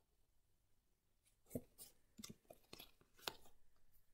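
Tarot cards being handled and gathered together in the hands: a run of soft card clicks and snaps that begins about a second and a half in, after near silence.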